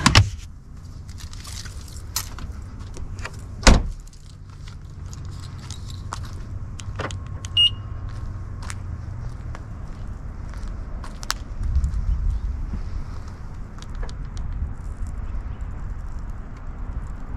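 A car door shutting with a single heavy thump about four seconds in, amid clicks and handling noises, over a steady low rumble. A short high beep sounds about halfway through, as the key fob is in hand.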